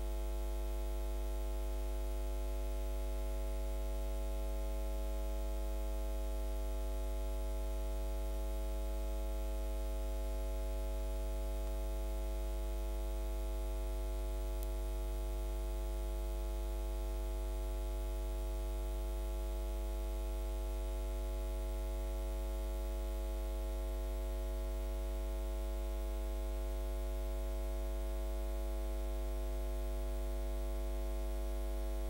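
Steady electrical mains hum: a low buzz with many overtones that does not change at all.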